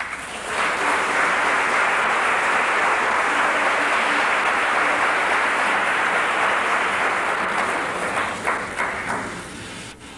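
Audience applauding, a dense steady clapping that thins to a few scattered claps near the end.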